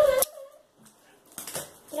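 Scissors snipping through a small plastic bag, faint, followed by a few light clicks and rustles of the plastic about one and a half seconds in.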